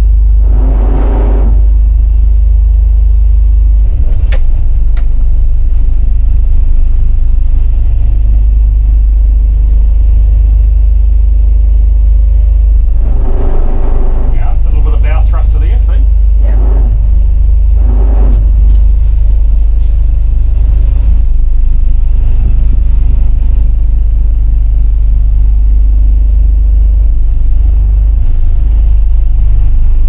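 Steady, loud low rumble of a Nordhavn N51 trawler's diesel engine running, as heard inside the pilothouse, with a few brief indistinct voices.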